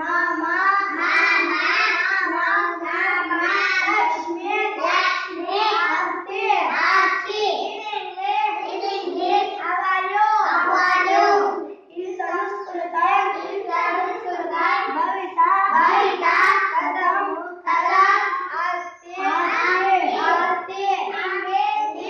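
A group of young children singing together in short, rhythmic phrases, with brief pauses about twelve and nineteen seconds in.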